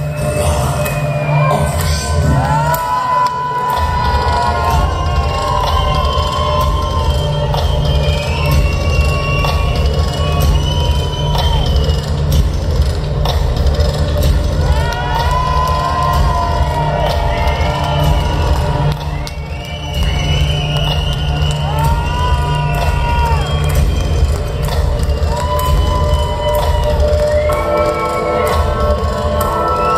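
Music over a concert hall PA: a steady low drone with high tones that rise and fall in pitch, and a crowd cheering and shouting over it.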